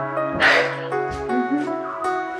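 Soft background music with held notes. About half a second in, a sudden loud, noisy burst sounds over it, and a few fainter ones follow.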